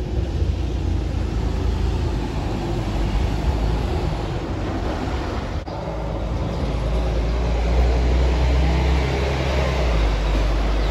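Diesel city buses and street traffic running past. Their low engine rumble grows heavier in the second half as a bus runs close by.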